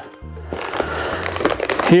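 Rustling and crinkling of plastic bags and packaging being handled inside a cardboard box.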